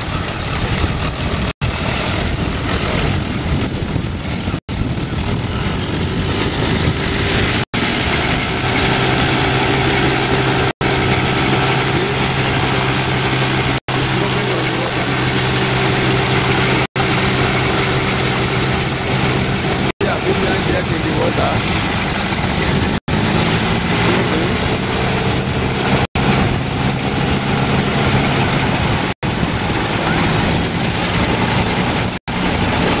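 Engine of a home-built, propeller-driven amphibious craft running steadily as the craft moves on water, a loud engine drone over rushing noise. For much of the time the drone holds one pitch.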